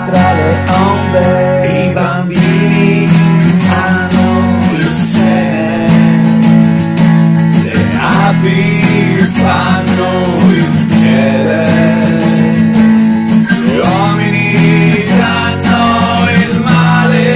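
A rock ballad with strummed guitar and a voice singing in Italian, the melody coming in phrases over sustained bass notes.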